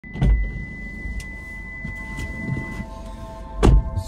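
A car's driver door opens with a short thump, and near the end is pulled shut with a heavy thump as the driver gets in. A steady high tone sounds for the first few seconds, over soft background music.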